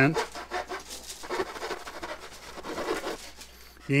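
Fine-toothed Zona razor saw cutting through a balsa wing rib: faint, light back-and-forth strokes.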